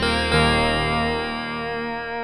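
Yamaha DX7IID FM synthesizer sounding a dry, effects-free patch in mono. Notes are struck at the start and again about a third of a second in, then ring on with many overtones and slowly fade.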